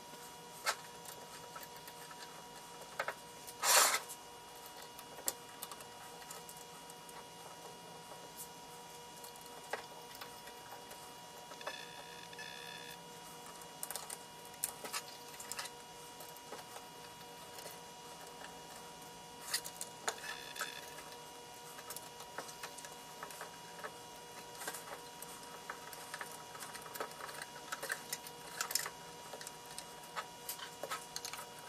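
Small metallic clicks, taps and scrapes as a hex wrench works the panel screws out of the ULN-2's metal case, with one louder knock about four seconds in and two short squeaks later on. A faint steady hum runs underneath.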